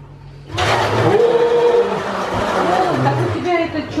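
A loud, steady rushing noise starts suddenly about half a second in and runs for about three seconds, with voices over it; a listener takes it for snow being cleared.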